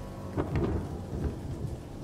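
Steady rain with a low roll of thunder that swells about half a second in.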